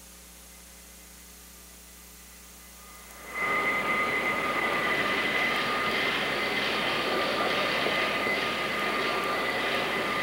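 Low mains hum, then about three and a half seconds in the sound cuts in to the steady, loud rushing background noise of a large hall picked up by a VHS camcorder, with two high, steady whining tones running through it.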